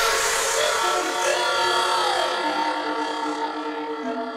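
Hard trance breakdown: sustained synth chords with the kick drum and bass gone, the chord stepping to new pitches every second or so as the level slowly falls.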